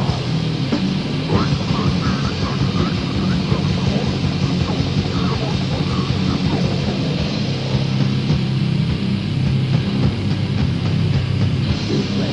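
Old-school death metal played on a 1990 demo tape: heavily distorted low guitars over fast, dense drumming, with the sound cut off above the high treble.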